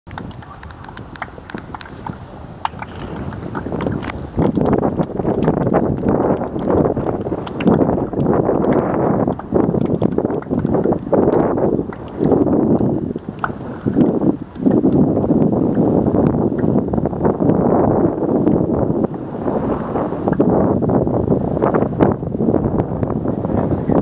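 Wind buffeting the camera microphone in uneven gusts, quieter for the first few seconds and then loud and rumbling.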